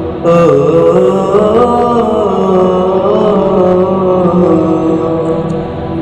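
Wordless vocal chanting or humming in the interlude of a Bengali Islamic gojol: long held tones that glide slowly up and down in pitch.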